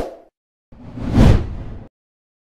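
Animated-logo sound effects: a short hit at the very start, then a whoosh that swells up about two-thirds of a second in and fades out just before the end.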